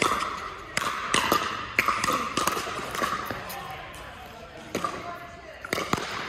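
A pickleball rally: sharp pops of paddles striking a hard plastic ball at irregular intervals, with bounces of the ball on the court. There is a quick run of exchanges, a short lull, then more hits near the end, each echoing slightly in the large hall.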